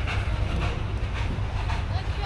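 Steady low outdoor rumble with no distinct events: background noise of the kind that wind on a phone microphone or distant traffic makes.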